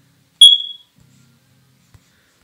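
A single short, high-pitched beep about half a second in, fading away quickly.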